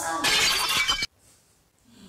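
Glass-shattering sound effect: a loud crash of breaking glass lasting about a second that cuts off abruptly.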